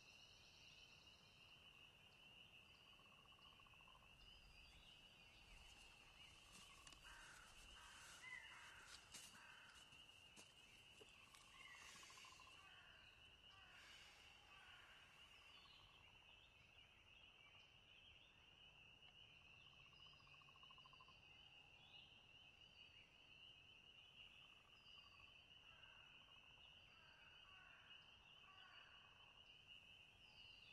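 Near silence: faint woodland ambience with a steady high thin drone throughout and occasional short bird chirps. Faint rustling of brush comes through in the middle.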